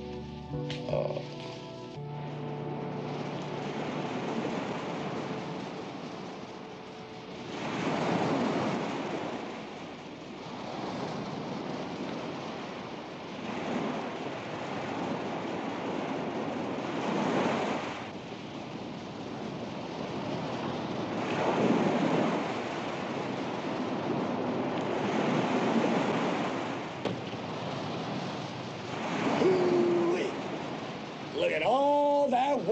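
Ocean surf breaking on a sandy beach: a steady rush of water that swells with each wave, about every four seconds.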